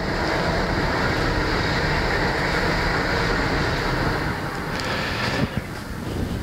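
A loud, steady rushing noise with no clear pitch, building up just before and easing off about five seconds in.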